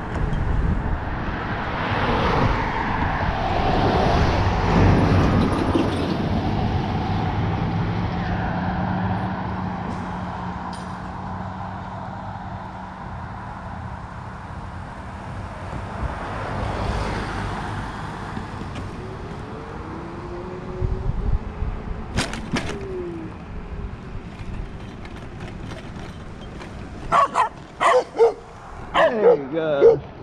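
Dogs barking in quick repeated barks, starting near the end, from dogs behind a chain-link fence. Before that, a mobility scooter's motor hums steadily under road noise that swells and fades as a vehicle passes.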